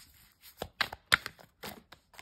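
A deck of tarot cards being shuffled and handled by hand: a string of irregular, sharp card snaps and taps.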